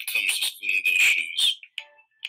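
A woman's voice reading a children's picture book aloud, played back from a video through a computer, with a short pause near the end.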